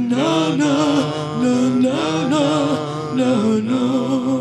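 Live music: a woman's voice singing long, wordless, wavering notes that slide between pitches, over a steady low drone.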